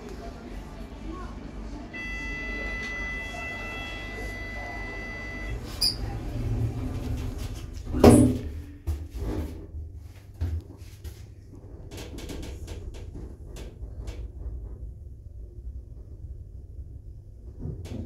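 1999 Oakland passenger lift: a steady electronic buzzer tone sounds for about three and a half seconds, then the doors shut with a loud thud about eight seconds in. A run of clicks and a low hum follow as the car travels down to the first floor.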